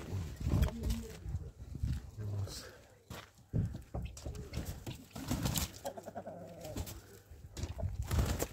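A metal latch rattling and a wooden gate being opened, then footsteps and farmyard poultry calling, with a short run of calls about five to six seconds in.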